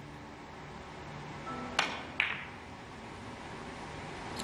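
Three-cushion carom billiards shot: two sharp clicks about half a second apart near the middle, cue and balls striking.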